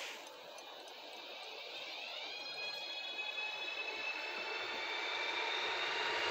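Renfe Civia series 465 electric multiple unit accelerating away from a station toward the listener. Its traction equipment gives a whine that climbs in pitch over the first two seconds and then holds steady, over rail noise that grows gradually louder as it approaches.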